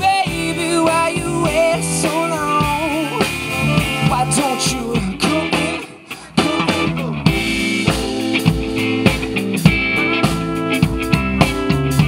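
Indie band playing live: trumpet, electric guitar and drum kit together, with a wavering melody line over the top. The music drops out briefly about six seconds in, then the full band comes back in with steady drums and guitar.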